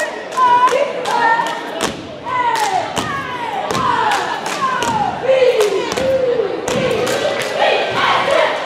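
Cheerleaders chanting a cheer in unison: short chanted syllables, then a string of drawn-out calls that fall in pitch, punctuated by sharp rhythmic beats.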